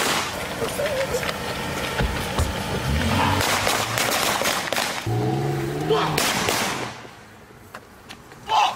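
Drive-by gunfire: sharp cracks of pistol shots over a car pulling away and raised voices. The noise drops off sharply about seven seconds in.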